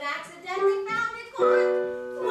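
Show-tune singing from a stage musical with instrumental accompaniment; the vocal line moves in short phrases, then settles into a long held note about one and a half seconds in.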